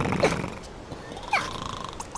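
Cartoon larva characters making nonsense vocal sounds: two short falling squeals about a second apart, over a low rumble.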